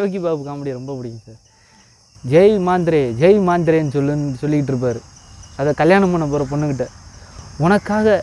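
A man talking in Tamil over a steady high-pitched drone of insects.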